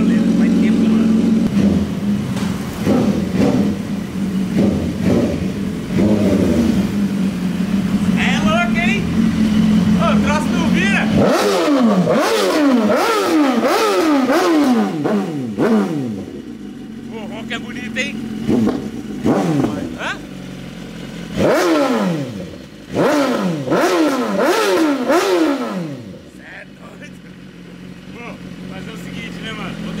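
BMW S1000RR inline-four sportbike engine idling, then blipped on the throttle in two runs of quick revs, about two a second, each one falling back toward idle. The bike has stood unused for a while and is being run to let its oil circulate.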